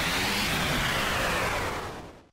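A whoosh sound effect for the logo reveal: a burst of noise that starts suddenly, slowly falls in pitch and fades out near the end.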